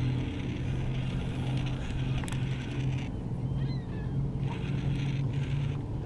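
A steady low motor hum, with a few faint, short, high chirps that fall in pitch about four and five seconds in.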